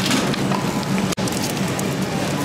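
Steady hiss and low hum of supermarket background noise, with light rustling and ticks of produce being handled. The sound breaks off abruptly for an instant about a second in.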